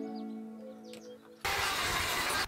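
Background music with sustained notes fades out, and about one and a half seconds in a corded handheld power tool starts up abruptly with a steady whirring noise.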